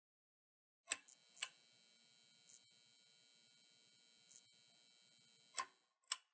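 Near silence with about six short, sharp clicks at irregular intervals.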